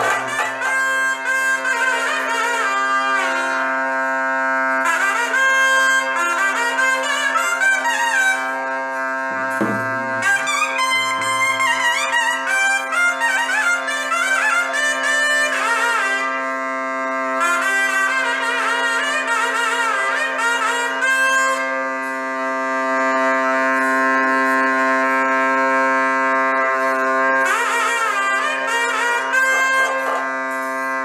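Ritual pipe music: a double-reed pipe plays a winding, ornamented melody over an unbroken reed drone, with a couple of low drum strokes about ten seconds in.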